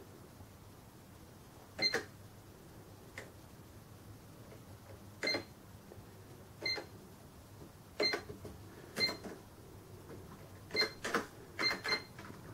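Keys on a Sam4S NR-510R cash register pressed one at a time, each press giving a short high electronic beep. There are about nine presses, a second or more apart at first and coming quicker near the end.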